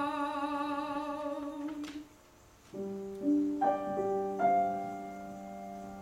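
A mezzo-soprano holds a sung note with vibrato, which ends about two seconds in. After a brief pause, a grand piano plays sustained accompaniment chords, with a new chord struck about every second.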